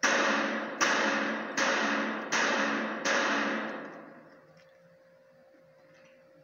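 Five gunshots in quick succession, about three-quarters of a second apart, each ringing out in the echo of an indoor firing range, played back through a TV's speaker.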